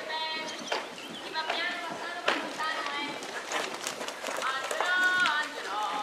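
High-pitched children's voices talking and calling out, one call held for about half a second near the end, with a few sharp knocks in between.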